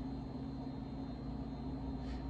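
Steady low hum with a faint hiss underneath, unchanging throughout, with no distinct events.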